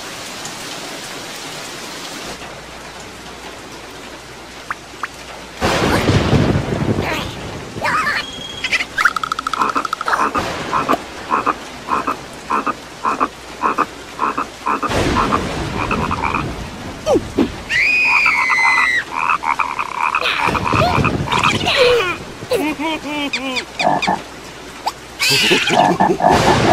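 Cartoon soundtrack of steady rain, with thunder rumbling three times. Through the middle a frog croaks in quick repeated pulses, and near the end there are squeaky gliding cartoon cries.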